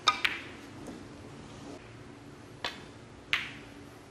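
Snooker balls clicking: a pair of sharp, ringing clicks right at the start, then two more single clicks near the end, as a shot is played and the balls strike each other.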